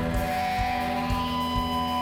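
Live heavy-metal band playing: electric guitar holding long notes that shift pitch a couple of times, over a steady kick-drum beat of about two strokes a second.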